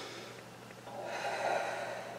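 A woman's heavy, breathy exhalation, about a second long, starting about halfway through.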